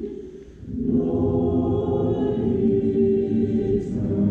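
Church choir singing, breaking off briefly between phrases at the start and coming back in about a second in with full, sustained chords.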